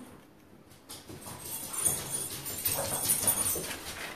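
Stiff paper rustling and crinkling as the petals of a large paper flower are handled and pressed into place. It starts about a second in, after a brief hush.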